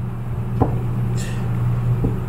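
Steady low hum, with a single soft tap of a fingertip on the head unit's touchscreen about half a second in.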